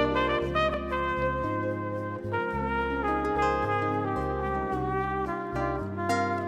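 Jazz band playing an instrumental introduction: a melody of long held notes over a bass line that shifts about once a second, with a strong note attack at the very start.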